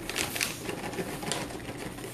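Small dog's rubber-soled boots tapping and scuffing on a tile floor, a few irregular soft taps as it steps awkwardly in them.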